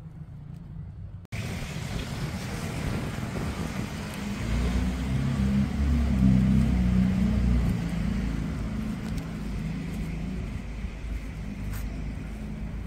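Wind buffeting the microphone over a steady open-air hiss, starting abruptly about a second in and strongest about halfway through.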